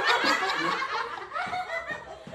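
People laughing, with some talk mixed in.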